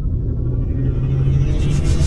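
Cinematic logo-reveal sound effect: a loud, deep rumble with a low hum under it, building as a brighter hiss swells in during the second half.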